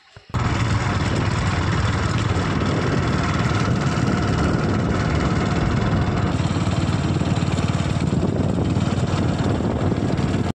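Loud, steady rumble and rush of a moving vehicle, heard from on board, starting abruptly a moment in.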